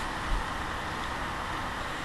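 Steady hiss of room noise picked up by a low-quality webcam microphone, with a faint low bump about a third of a second in.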